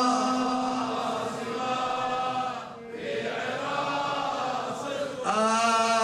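A male reciter chanting a Muharram lament (nawḥ) in long, drawn-out melodic notes. The voice fades and dips briefly about three seconds in, then comes back stronger near the end.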